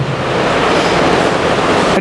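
A steady rushing hiss, about as loud as the speech around it, swelling slightly in the middle and then dying away as speech resumes.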